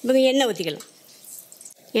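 A woman's voice speaking for under a second, then about a second of faint, featureless background before speech resumes; no other distinct sound.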